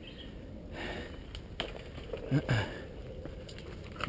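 Mountain bike rolling over a rocky dirt trail: a steady low rumble with scattered small clicks and rattles.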